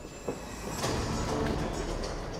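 Crowd in a fight hall applauding and calling out at the end of a kickboxing bout, swelling about a second in, with a single knock just before.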